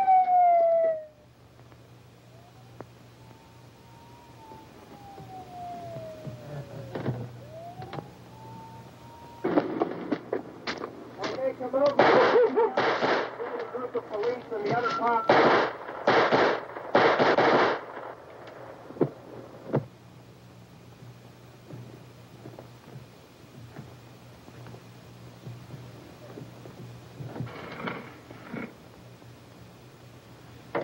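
A siren winds down and then wails faintly in a slow rise and fall. About ten seconds in, a long run of gunshots fires in quick succession for some eight seconds, with a wavering tone under them, and a few more shots come near the end.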